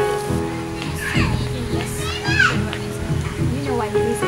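Speech over steady background music.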